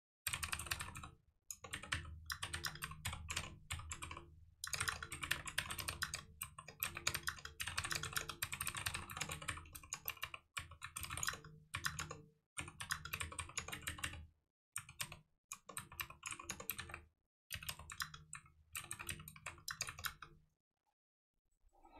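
Fast typing on a computer keyboard, in runs of rapid keystrokes broken by short pauses.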